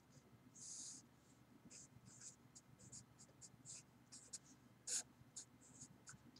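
Black marker writing on paper: a faint series of short scratchy strokes, with the loudest one about a second before the end.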